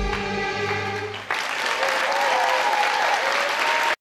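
Middle Eastern pop dance music holds its final notes, then about a second and a half in an audience bursts into applause, with cheering voices rising above the clapping.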